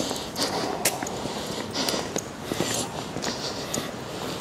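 Footsteps on a pavement at a walking pace, a soft scuff about every three-quarters of a second, with a few light clicks.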